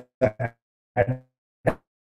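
Speech only: a man's halting voice in four short clipped syllables, with dead silence between them, heard over a video call.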